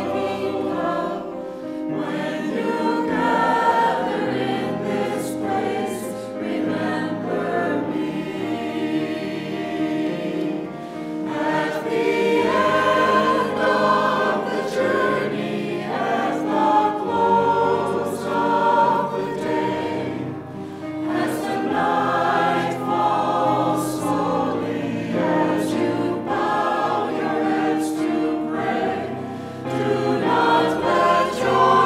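A mixed church choir of men and women singing.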